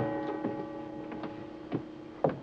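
A steady ringing chord of several pitches, held throughout, with a few soft knocks.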